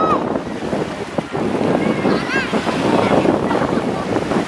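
Small waves washing onto a sand beach under steady wind buffeting the microphone, with a few short high-pitched cries rising and falling, one at the start and another about two and a half seconds in.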